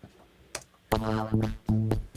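Electronic synth chords played back through a vocoder-style vocal synth plugin. After a couple of faint clicks they start about a second in, and the sustained chord is chopped into a stuttering rhythm.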